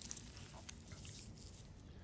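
Quiet background tone with a few faint soft ticks about half a second in.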